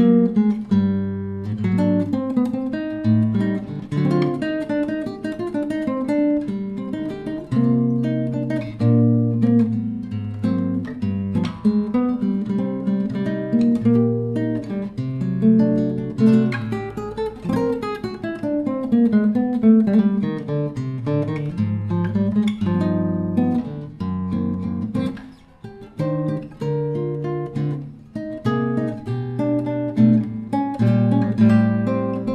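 Solo classical guitar playing a choro: a plucked melody over moving bass notes, with a brief drop in level about 25 seconds in.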